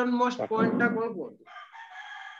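A rooster crowing: one long, wavering crow whose last part is higher-pitched.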